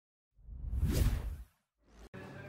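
A whoosh sound effect from an animated logo intro. It swells up about half a second in, peaks about a second in, and fades out by about a second and a half.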